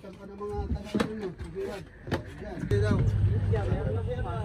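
Voices talk in the background with a couple of sharp knocks, and then, about two-thirds of the way in, a boat engine's steady low hum comes in and keeps running.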